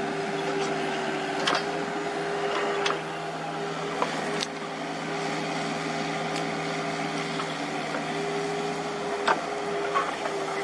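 JCB JS205SC and Komatsu PC75UU excavators running while digging soil: a steady engine drone with a whine held at one pitch. A few sharp knocks stand out over it, one about four and a half seconds in and another near the end.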